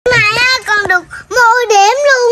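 A young girl singing in a high voice: a short phrase, a few quick syllables, a brief pause, then a long held note.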